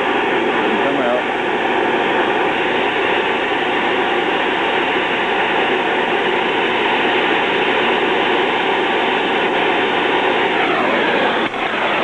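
Propane torch flame burning with a steady, loud rushing hiss while it heats a cast aluminium compressor head and melts aluminium repair rod into it. The hiss cuts off sharply just before the end.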